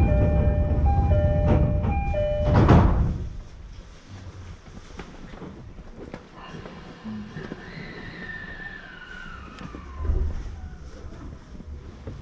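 An electronic chime of short, alternating tones with a loud rush near its end, lasting about three seconds. Then an electric commuter train pulls away from the platform, its traction motors whining in a tone that falls in pitch over a few seconds.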